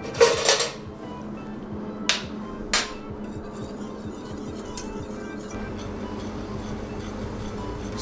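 Steel pans and utensils clattering: a short scrape right at the start, then two sharp metallic clinks a little after two seconds in, as a whisk works in a stainless saucepan. Steady background music runs underneath.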